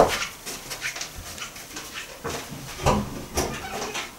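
Irregular knocks, clicks and rustling from someone moving about and handling things, the sharpest knock right at the start and a few more near the end.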